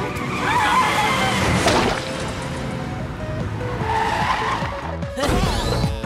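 Cartoon car sound effects, a car driving with tyres skidding, mixed over background music. There is a sudden louder low surge near the end.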